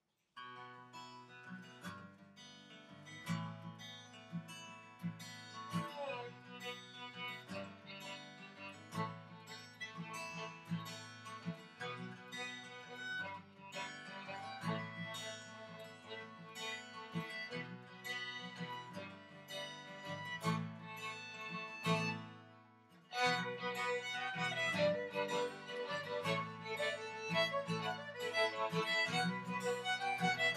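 Acoustic guitar and two fiddles playing a fiddle tune together, the guitar carrying the low notes. After a brief dip about three-quarters of the way through, the playing comes back louder and brighter.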